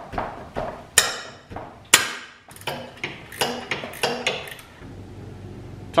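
Steel combination wrench clinking on the front engine mount bolts of a Kawasaki KLR 650 as they are loosened and backed out of the frame: two sharp metallic clanks about one and two seconds in, then a string of lighter clicks.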